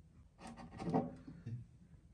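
Quiet rubbing and light knocks as a small solar garden lantern is handled and set on top of a fabric table lamp shade.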